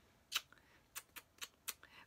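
A string of blown kisses: about six short, sharp lip-smacking clicks, spaced irregularly.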